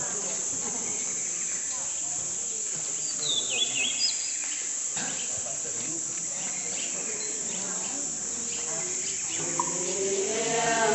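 A steady, high-pitched drone of insects, with a short run of bird chirps about three and a half seconds in.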